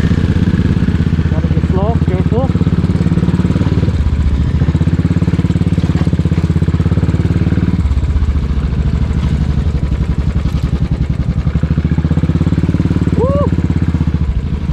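Royal Enfield Classic 500's single-cylinder engine running at low speed under load on a muddy, rocky track, its firing strokes heard as an even beat. The engine note shifts about eight seconds in.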